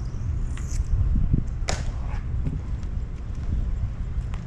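Low wind rumble on the microphone, with one sharp swishing click a little under two seconds in and a few fainter ticks around it.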